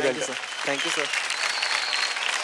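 Studio audience applauding, a dense steady clapping, with a man's voice saying a few short words over it near the start.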